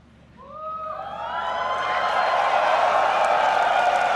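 Large audience cheering, whooping and applauding. It starts with a few rising whoops about half a second in and builds to a steady roar of applause over the next two seconds.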